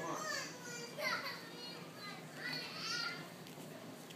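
An 11-month-old baby babbling and squealing in three high-pitched calls, each gliding up and down in pitch.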